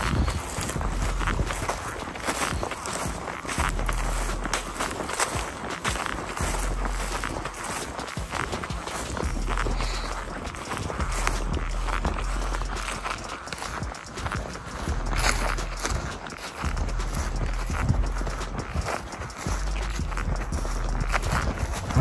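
Footsteps of a person walking at a steady pace across grass scattered with dry leaves.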